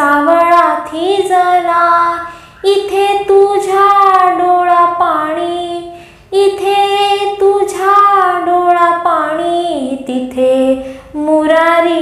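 A single high voice singing a Marathi song in long, held phrases with gliding pitch, breaking off briefly about two and a half seconds in, about six seconds in, and near the end.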